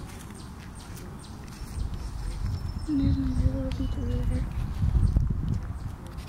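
Irregular low rumble of wind buffeting the microphone, building about two seconds in and dropping away near the end, with a steady low tone held for about a second and a half in the middle.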